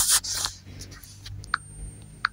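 Rubbing and scraping handling noise from a camera carried by hand, louder in the first half second, with a couple of faint short clicks later on.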